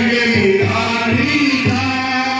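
Shekhawati Holi dhamal folk music: voices singing a chant-like song together over a steady drum beat of about two strokes a second.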